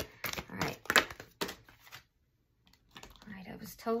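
A deck of tarot cards being shuffled by hand, a quick run of short papery slaps for about two seconds, then a brief dead silence before a voice starts near the end.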